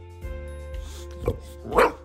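English bulldog barking twice over background music: a soft bark a little past halfway, then a louder one near the end.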